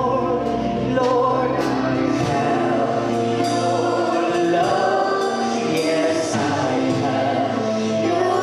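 Gospel worship music with a choir singing over sustained instrumental notes.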